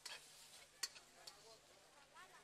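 A few faint, light clicks of a metal ladle against a steel wok as pieces of chicken are stirred.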